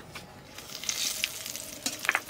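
Nigella seeds and bay leaves sizzling as they are tempered in hot oil in a kadai. The hiss builds about half a second in, with a few light crackles.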